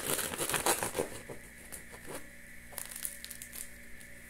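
Crusty bread roll crackling as a knife cuts through its crust and the halves are pulled apart: a dense crackle through the first second, then scattered crackles.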